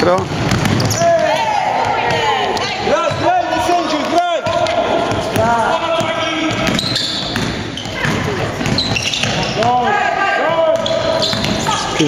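A basketball being dribbled and bouncing on a sports-hall floor during play, under steady shouting voices from the players and bench. The sound carries the echo of a large hall.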